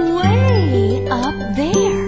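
Children's music-class song: a wordless voice swooping up and down in pitch over a steady low accompaniment that comes in about a quarter second in, with light jingling.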